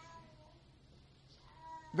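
A faint, drawn-out, high-pitched voice-like sound, heard twice: once at the start and again near the end, each lasting about half a second.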